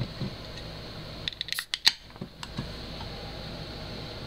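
Pull tab of a tall aluminium drink can being opened: a few sharp clicks and a crack with a brief hiss, a little under two seconds in.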